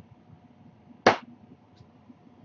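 A single sharp smack, like a hand striking something, about halfway through; otherwise only quiet room tone.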